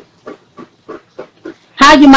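Speech: a few faint, short voice sounds, then a person starts talking loudly near the end.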